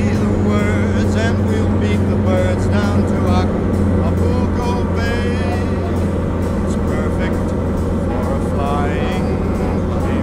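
Single-engine light aircraft's piston engine and propeller droning steadily on final approach, its tone shifting slightly a few seconds in. Music plays over it.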